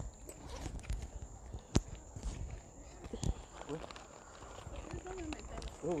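Footsteps on hard paved ground with the knocks of a handheld phone being carried, including a sharp click about two seconds in. A woman's voice says a short "oui" twice in the second half.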